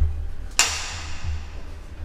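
Background music with a steady bass line; about half a second in, a sharp bright hit rings out and fades away over about a second.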